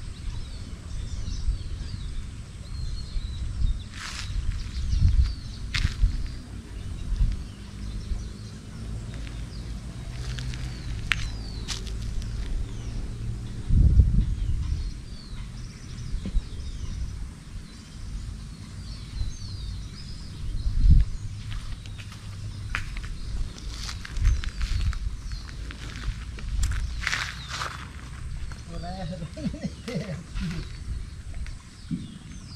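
Wind gusting over the microphone as a low rumble that swells and fades, with birds chirping throughout and a few sharp clicks.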